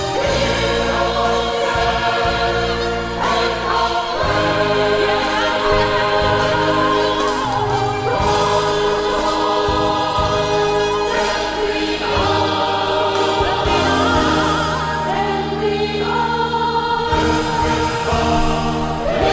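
A youth choir singing in several parts, holding long chords that change every few seconds over steady low notes.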